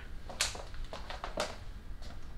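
Two light clicks or taps about a second apart, with a few fainter ones around them: small handling sounds of objects being moved.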